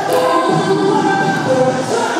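Music with a group of voices singing together, holding several overlapping sustained notes.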